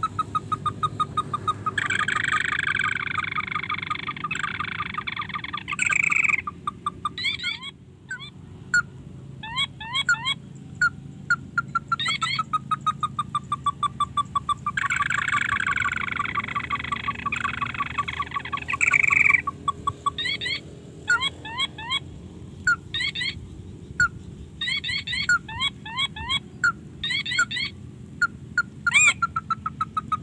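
Animal calls, mostly birds: a steady run of short repeated notes, two spells of harsh buzzing lasting a few seconds each (one a couple of seconds in, one at about the middle), and many quick chirping notes, loudest near the end.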